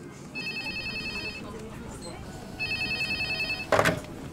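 Panasonic 2.4 GHz digital cordless phone base ringing twice, each ring an electronic warbling trill about a second long. Near the end comes a short, loud knock as the handset is lifted.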